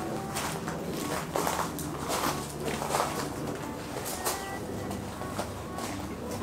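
Knocks and rustling of gear being handled in the open rear of a camper van, with a bird calling.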